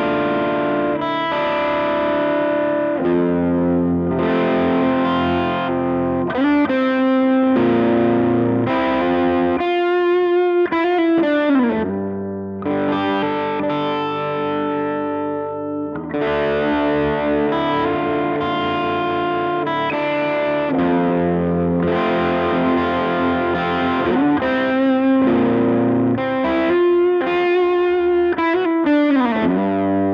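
Electric guitar (Tokai LS-186) played through a Bouyer ST20 valve amp, an 18-watt EF86-preamp, 6L6GC push-pull head, with a distorted tone. Sustained chords and notes with several sliding notes, played continuously.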